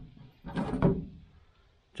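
A homemade wooden door panel is lifted off a car's metal door shell after a test fit, giving a short rub and knock about half a second in that fades away.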